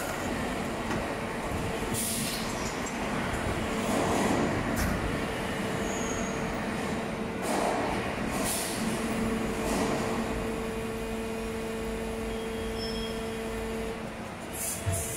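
PET preform injection moulding machine running, a steady hum carrying two steady tones. Several short bursts of hissing come through it, the strongest about four and eight seconds in.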